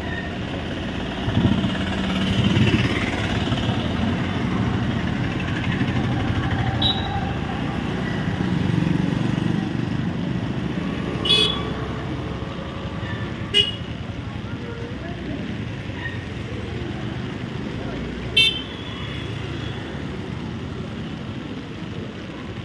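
Roadside traffic on a wet road: vehicles passing with a steady low rumble and tyre noise. Three short horn toots come in the second half, mixed with the voices of a crowd walking by.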